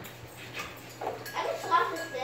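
A man's voice speaking from about a second in, after a quiet stretch with a faint steady low hum.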